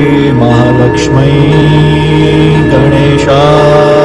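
Devotional Hindu mantra music: a steady sustained drone with a chanting voice, and two short bright strikes, one about a second in and one just after three seconds.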